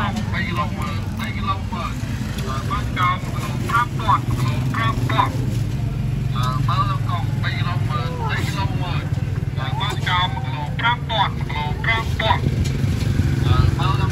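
People talking, with a steady low rumble of a vehicle engine running underneath.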